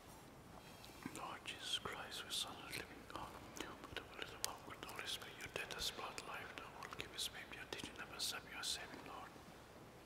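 Hushed, whispered speech running for about eight seconds, its s-sounds standing out sharply.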